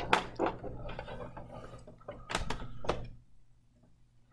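Handling noise from a webcam being repositioned: a few irregular knocks and clicks with rubbing in between, dying away near the end.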